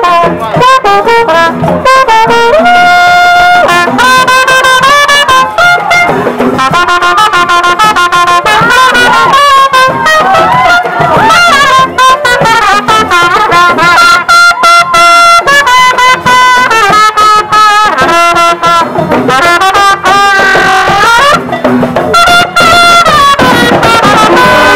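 Loud brass band of trumpets, trombones, sousaphone and saxophone playing together, with held chords and melodic runs.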